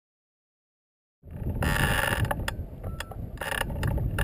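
Wind buffeting the microphone of a camera mounted on a hang glider, starting suddenly just over a second in as a low rumble. Over it come irregular clicks and rattles from the glider's frame and rigging, with a couple of short rushes of noise.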